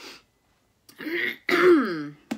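A woman clearing her throat in two short pushes, starting about a second in, the second one louder.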